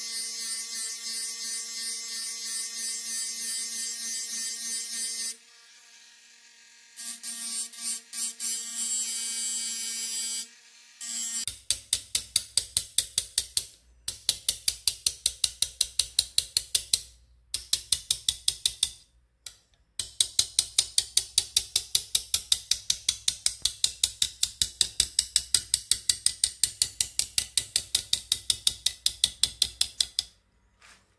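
Handheld rotary tool whining steadily as its coarse abrasive point grinds the back hollow (ura-suki) of a sashimi knife, with a short break partway. From about eleven seconds in, a small hammer taps the steel blade held in a bench vise, light metal-on-metal strikes about four a second in runs with short pauses, bending out a warp in the blade.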